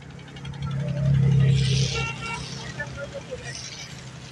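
A motor vehicle passing close by: a low engine hum swells to its loudest about a second and a half in, then fades away, with faint voices in the background.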